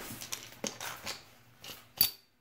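A Benchmade 781 Anthem folding knife drawn out of a trouser pocket: faint fabric rustling with a few small clicks. Right at the end the pocket clip snaps down onto the integral titanium handle with a single sharp metallic ding.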